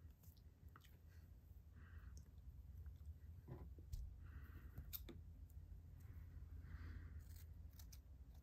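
Faint, scattered snips of fly-tying scissors trimming the ends of a clump of synthetic craft fur square.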